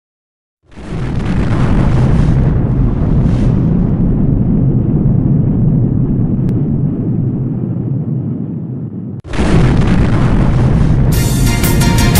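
A long, deep rumbling explosion sound effect that slowly dulls, then is cut off and followed at once by a second rumble. Music with a beat comes in near the end.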